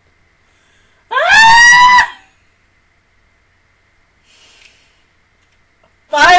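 A woman's high-pitched scream of dismay, rising in pitch and lasting about a second, followed a couple of seconds later by a faint breath.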